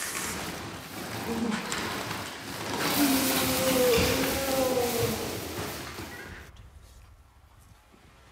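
Coconut-frond broom (salu) swept hard across a wooden floor ahead of a sliding brass pot, its bristles hissing loudest a few seconds in. A drawn-out vocal cry rises over the sweeping, and the sound dies away near the end.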